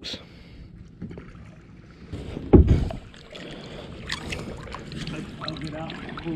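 Magnet-fishing rope being hauled up by hand out of the river beside a plastic kayak, with one brief loud knock about two and a half seconds in.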